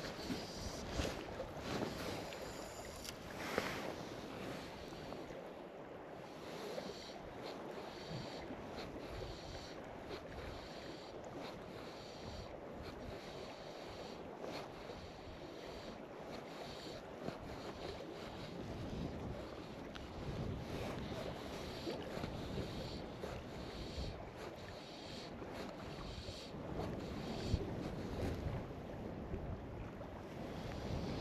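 Gusty wind buffeting the microphone over choppy lake water lapping at the shore: a steady rushing noise that swells and eases, with a sharp tick about three and a half seconds in and another near the end.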